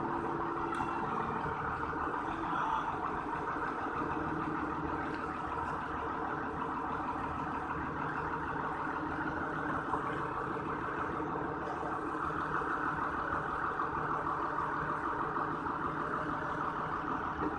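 Forklift engine running steadily under light load as it pushes a heavy steel plate onto a truck bed.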